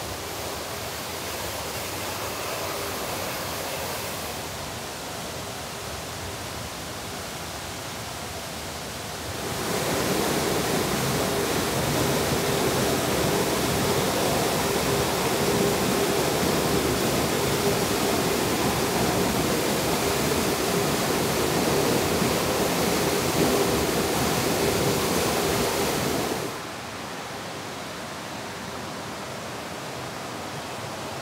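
Steady rush of a mountain river's cascades below, then, about a third of the way in, the much louder, fuller rush of a waterfall heard close up, which cuts back to the quieter river sound near the end.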